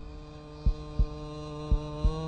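A heartbeat sound effect, slow paired thumps about once a second, over a steady humming vocal drone.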